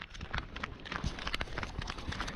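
Quick, irregular footfalls of people running in flip-flops on a concrete walkway.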